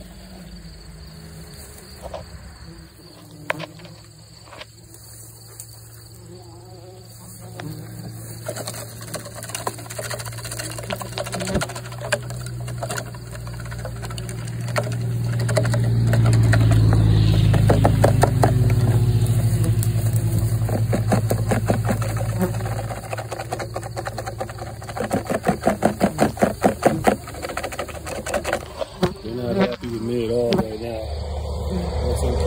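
Bumblebees buzzing as they are shaken out of a plastic vacuum-collection bottle into a nest box: a low, steady drone that swells loud in the middle and then eases. Near the end there is a run of rapid ticks.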